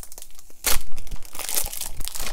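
Clear plastic packaging crinkling and crackling as it is handled and pulled, in irregular bursts, loudest a little under a second in.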